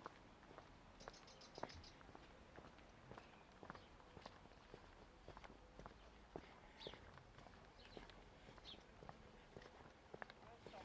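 Quiet footsteps on a stone-paved footpath at a steady walking pace, about two steps a second, with breathing through the nose close to the camera microphone.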